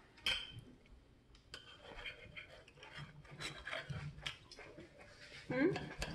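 A kitchen knife sawing through a cooked steak on a plate, with faint scraping and light clicks of cutlery against the plate.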